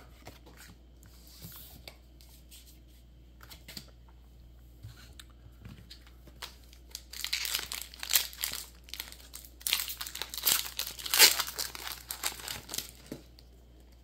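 Foil booster-pack wrapper crinkling and tearing as a Pokémon card pack is opened, in loud crackly bursts from about halfway in. Before that there are only faint taps of cards being handled.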